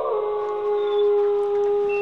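A man's drawn-out vocal exclamation, held on one steady note, stepping slightly down in pitch just at the start.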